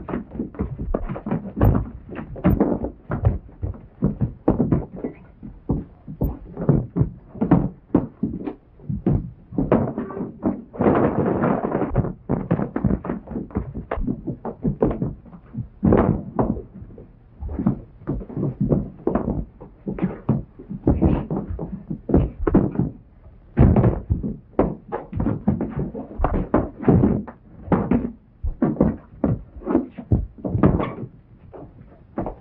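Fistfight sound effects: a fast, irregular run of punches, thuds and knocks as bodies hit the wooden floor and furniture, with a longer stretch of scuffling noise about ten seconds in.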